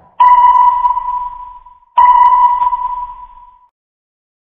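Two electronic sonar-style pings, about a second and three-quarters apart. Each is one clear tone that strikes sharply and rings away.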